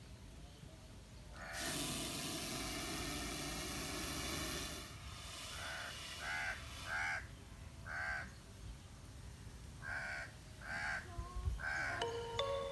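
A crow cawing repeatedly in short, harsh calls, about seven of them from about six seconds in. A loud rushing noise lasts about three seconds before the calls begin.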